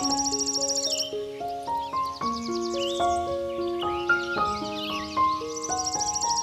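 Gentle solo piano music, single notes ringing out one after another, over a nature ambience of high, rapidly pulsing insect trills that fade about a second in and return near the end, with short chirping calls around them.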